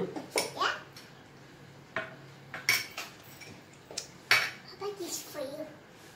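A spoon clinking and scraping against small bowls as fruit salad is stirred and served, a few separate sharp knocks.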